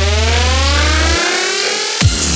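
Dubstep/glitch hop build-up: one long, siren-like rising synth sweep over a held sub-bass note, which cuts out a little over a second in.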